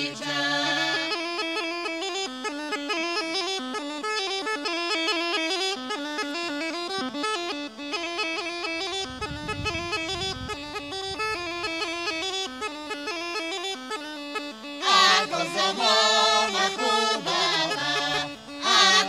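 Rhodope kaba gaida, the large Bulgarian bagpipe, playing a solo: a fast-ornamented melody over its steady drone. About three seconds before the end, a mixed group of folk singers comes back in over it.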